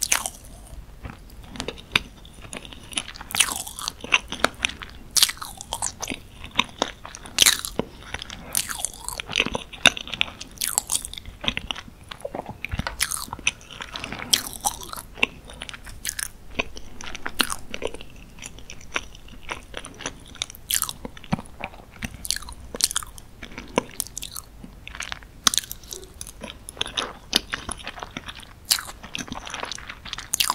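Close-miked eating sounds of a person chewing moist dark chocolate cake with chocolate sauce. Sticky, wet mouth sounds and irregular sharp clicks keep coming throughout.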